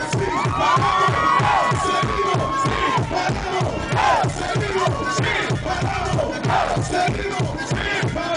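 Live reggaeton music over a concert PA: a steady bass beat with voices shouting and chanting over it, and the crowd cheering.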